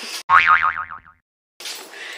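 A cartoon 'boing' sound effect added in editing: one springy tone that wobbles as it falls in pitch, lasting under a second, cut in with dead silence on either side.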